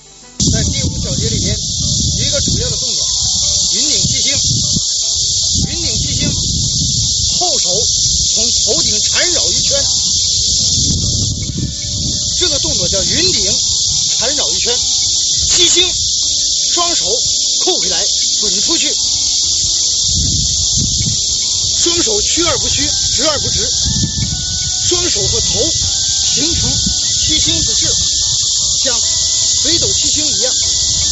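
A voice speaking under a loud, steady high-pitched hiss that starts abruptly about half a second in.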